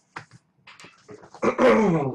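A few soft clicks of handling, then near the end a loud vocal groan of about half a second that falls in pitch.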